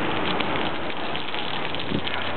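Water from a garden hose splashing steadily onto concrete pavement.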